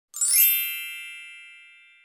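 A bright chime sound effect: a quick upward shimmer into a ringing ding of many high tones that fades away slowly.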